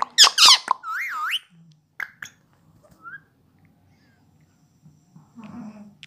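Indian ringneck parakeet giving a quick run of high, squeaky, wavering whistled calls in the first second and a half. These are followed by two soft clicks and a faint chirp, then it goes mostly quiet.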